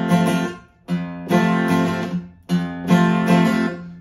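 Acoustic guitar, tuned a half step down and capoed, playing the verse pattern: a picked bass note, then down-down-up strums of the chord, stopped by a string mute. The strings go quiet twice, about a second in and again after two seconds, before the bass note and strums start again.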